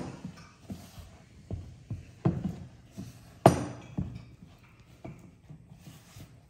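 Irregular soft knocks and taps of kitchenware being handled on a counter, about eight in all, the loudest about three and a half seconds in.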